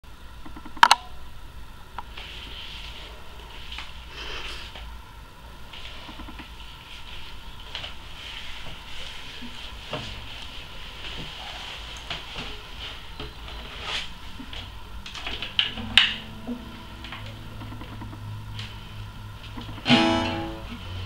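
Handling noises in a small room: a sharp click about a second in, then rustling and light knocks as the camera is adjusted and an acoustic guitar is picked up. A louder knock comes near the end, after which the guitar's strings ring faintly and low.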